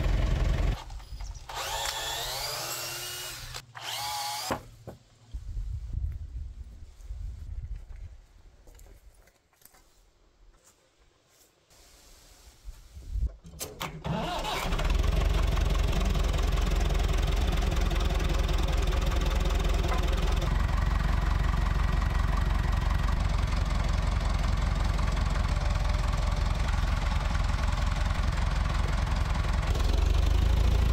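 Massey Ferguson 165 tractor engine starting about halfway through, after several seconds of quieter, uneven sound, and then running steadily and loudly.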